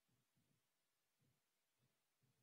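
Near silence: the meeting audio feed is essentially empty, with no speech or other sound.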